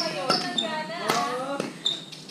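Women's voices talking, cut through by three sharp smacks spaced about half a second to a second apart.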